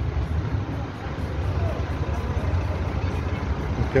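Steady low rumble of an engine running, unchanging throughout.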